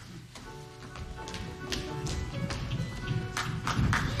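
Live pit band music starting up: held chords with sharp percussion hits, growing louder.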